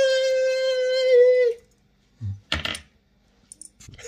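A man's voice holding one long, high note at a steady pitch for about a second and a half, then stopping abruptly. About a second later comes a soft thump with a brief clatter, and a few faint high ticks near the end.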